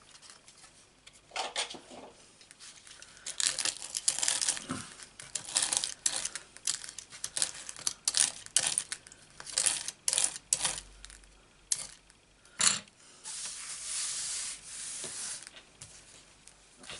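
Stiff bristle brush scrubbing over a die-cut cardstock doily to push the tiny waste pieces out of the cut-outs: a run of short scratchy strokes, then a longer steady rasp near the end.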